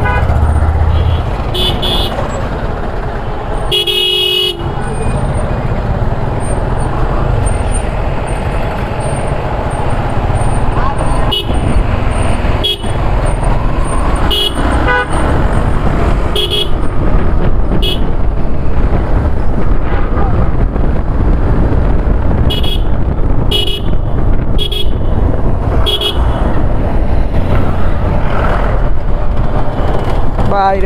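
Motorcycle riding through traffic: a steady low rumble of engine and wind, with vehicle horns sounding in many short toots, the longest about four seconds in.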